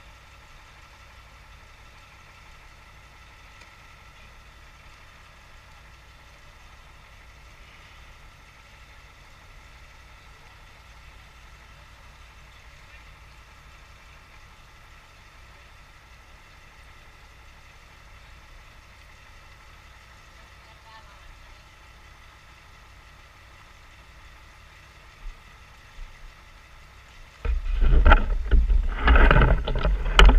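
Faint, steady engine hum, like machinery idling. About 27 seconds in it gives way to loud rumbling and buffeting as the camera is picked up and handled.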